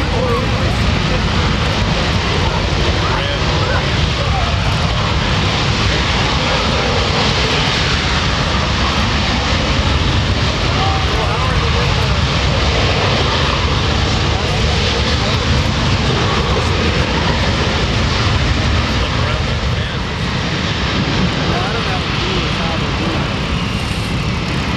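Boeing C-17 Globemaster III's four turbofan jet engines running steadily and loudly as the transport taxis on the ramp.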